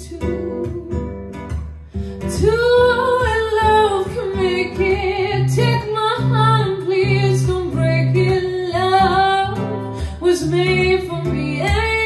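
A woman singing over an acoustic guitar accompaniment. After a short break about two seconds in, she holds long notes that slide in pitch.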